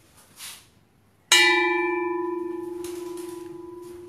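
A hanging bronze Thai temple bell struck once a little over a second in. It rings with one clear, steady main tone and higher overtones that fade quickly, and the main tone dies away slowly over about three seconds.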